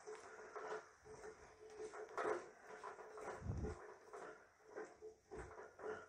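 Spatula stirring whole shallots, tomato and green chillies in a non-stick pot: faint, irregular scrapes and knocks, with a soft thud about three and a half seconds in.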